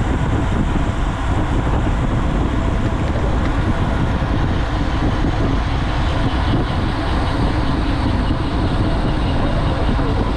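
Steady wind noise rushing over an action camera's microphone as it moves at riding speed on a road bicycle in a pack of cyclists.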